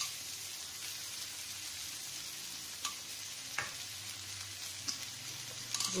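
Rice and tomato masala sizzling steadily in a hot, heavy-bottomed kadhai, with a few light clicks of a wooden spatula against the pan.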